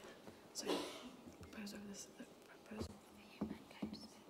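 Faint whispered and murmured conversation between people in the room, away from the microphones, with a few small clicks and rustles.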